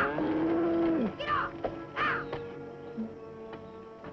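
A cow moos once, a drawn-out call of about a second that drops in pitch at its end. A couple of short, sharp bird calls follow over a background music score.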